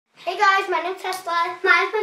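A young girl's voice talking; nothing else stands out.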